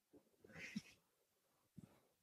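Near silence, with one faint, brief sound about three-quarters of a second in.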